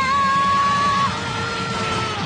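A boy's long, loud, held yell at a steady pitch over background music, changing to a second held tone about a second in.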